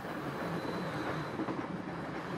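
A train running, a steady, even rolling noise with no distinct clicks.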